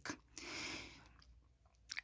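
A faint, brief intake of breath by a male narrator, about half a second long, followed by a small mouth click just before he speaks again.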